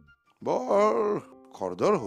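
Background music: short wordless vocal phrases that glide up and down, over faint held keyboard notes.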